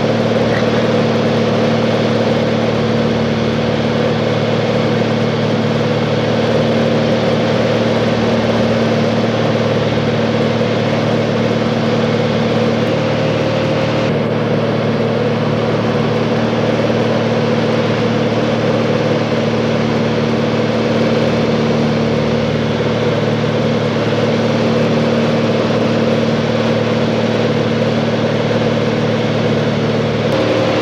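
A small plane's engine and propeller in flight, heard from inside the cabin as a loud, steady drone with a constant hum.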